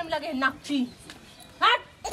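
Voices trailing off about half a second in, then one short, loud cry rising sharply in pitch about a second and a half in.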